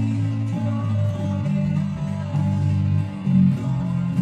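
Electric bass guitar playing a line of held low notes, changing pitch about once a second, through the chorus progression of F, C, A minor and G.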